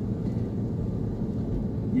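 Steady low rumble of engine and road noise from a moving vehicle, heard from on board.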